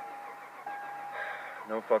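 1998 Toyota Tacoma's dashboard warning chime dinging, one tone repeating about once a second.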